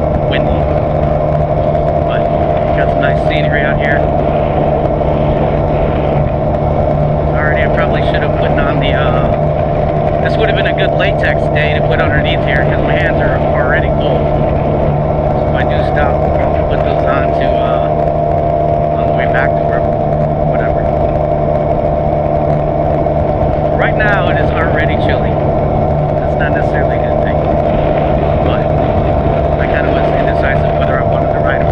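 Benelli TRK 502's parallel-twin engine and exhaust running at a steady cruise, a constant engine drone that holds one pitch throughout, under wind noise on the microphone.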